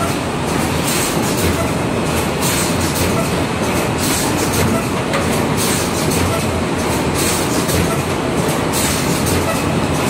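Fully automatic rigid box making and wrapping machine running at speed: a steady, dense mechanical clatter with a short, sharper burst of noise repeating about every three-quarters of a second.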